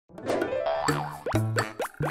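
Upbeat intro jingle with cartoon sound effects: a wobbling boing about a second in, then three quick rising pops with a bass line underneath.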